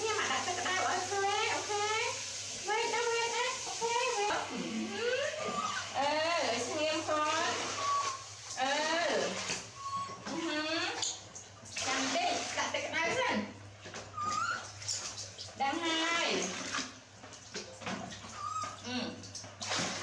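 Mostly a person's voice talking steadily in a small tiled room, with a steady low hum underneath.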